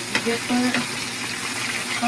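Burgers frying in a pan, a steady sizzling hiss, with a short click near the start.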